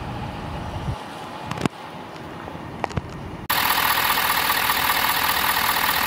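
Ford 6.7-litre Power Stroke turbodiesel V8 idling, cutting in abruptly a little past halfway through. Before it come a few sharp clicks over a quieter background.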